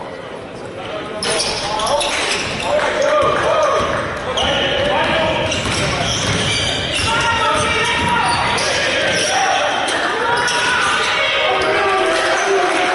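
Basketball game noise in an echoing gym: a ball bouncing on the hardwood court under a busy layer of indistinct voices from players and onlookers. It grows louder about a second in and stays busy.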